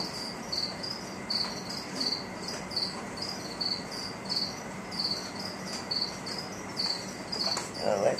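A cricket chirping steadily, short high chirps about three times a second.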